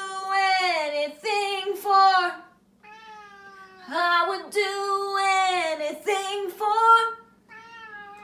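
Siamese cat meowing loudly and insistently: a string of about eight or nine long, drawn-out, wavering meows, one after another with hardly a pause.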